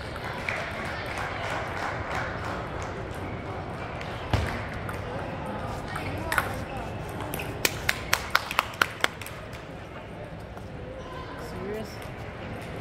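Table tennis rally: a celluloid-type ball struck by rubber paddles and bouncing on the table. There is a single sharp click about six seconds in, then a quick run of about seven sharp clicks over a second and a half. A steady murmur of voices runs underneath.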